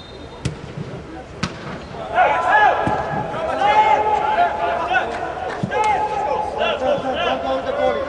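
A soccer ball is kicked with a sharp thud about half a second in, followed by a second thud a second later. Then several voices shout and call out over one another, louder than the kicks.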